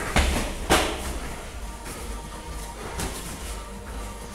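Kickboxing strikes landing in a close exchange: two sharp smacks of padded gloves or foot pads hitting, about half a second apart near the start, and a fainter one about three seconds in, over background music.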